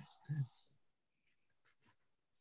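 A brief voiced sound just after the start, the last of a video-call group's laughter, then near silence broken by a few very faint clicks.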